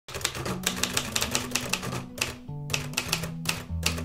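Manual typewriter being typed on: a quick, uneven run of key strikes with a short pause about halfway through. Background music with held low notes plays underneath.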